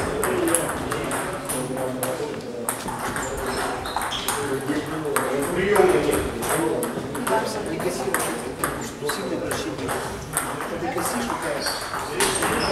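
Table tennis balls clicking irregularly off tables and rackets, with voices talking in the background.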